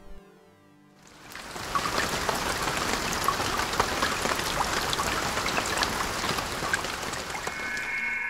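Rain-and-droplet sound effect: a dense patter of drops swells in about a second in and holds steady. Near the end a bright chime comes in over it.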